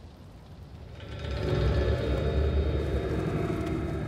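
A deep rumble swells up about a second in and holds, with sustained dramatic score tones over it: a film soundtrack effect for a menacing entrance.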